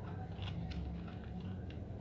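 A few faint clicks of remote-control buttons being pressed to move the cursor across a satellite receiver's on-screen keyboard, over a steady low hum.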